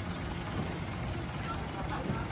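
Steady low rumble of vehicle traffic, with faint distant voices.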